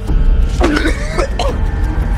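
A man's short strained grunts and coughs, clustered about half a second to a second and a half in, over a low, ominous drone of music score.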